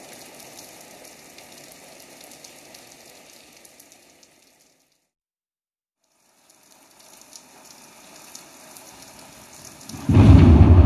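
Faint vinyl record surface crackle and hiss in the gap between sides, with scattered fine clicks. It fades out to silence about halfway through, fades back in about two seconds later, and music starts just at the end.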